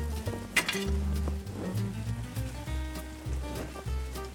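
Background music with a repeating bass line, over a faint sizzle of sausage, onions and garlic frying in a pan.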